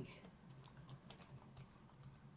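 Near silence with a few faint, light clicks scattered through.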